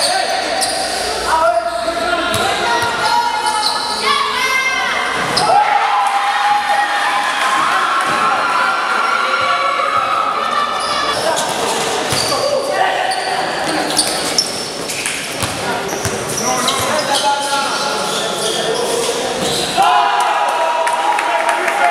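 A live basketball game in a large gym: the ball bouncing on the court as players dribble, with players and spectators shouting throughout.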